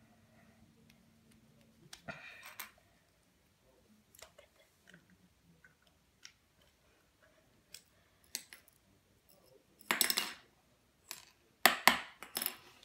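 Plastic pen parts being handled while an ink refill is tried in a pen body: scattered light clicks and taps, with a louder clattery rattle about ten seconds in and another sharp click near the end.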